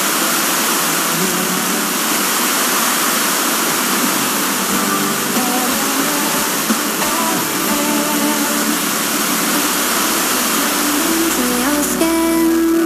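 Demodulated audio from an RTL-SDR receiver tuned to a weak, distant FM broadcast station: loud steady hiss with a song coming through faintly underneath. The music grows clearer in the second half as the fading signal strengthens.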